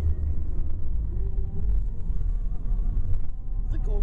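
Steady low rumble of a moving car heard from inside the cabin, road and engine noise.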